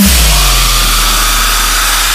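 Dubstep music: a bass hit that drops sharply in pitch at the start, then a harsh, noisy distorted synth bass held over a deep steady sub-bass.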